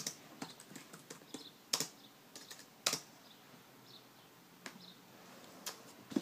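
Faint, scattered light clicks and taps at an uneven pace, the sharpest two a little under two and about three seconds in.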